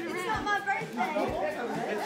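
Indistinct talking, with several voices overlapping.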